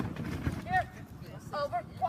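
Outdoor phone-microphone ambience: a steady low rumble of wind and handling noise, with a few short, high-pitched voice calls, the loudest a little under a second in.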